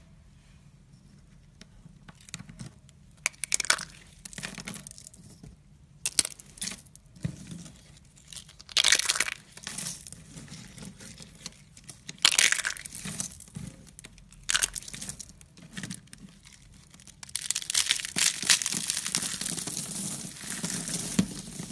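Thin, brittle sheets snapped and crushed by hand into small flakes, crackling and crunching in separate bursts. Near the end this becomes dense, continuous crunching as a handful of flakes is squeezed.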